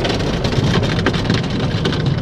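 Automatic car wash heard from inside the car's cabin: water spray and wash brushes beating over the windshield and body in a dense, steady spatter.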